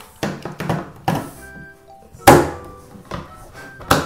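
Hard plastic electronic picture book being handled and shut on a table: a series of knocks and clacks, the loudest a little over two seconds in, with a few short faint electronic-sounding notes between them.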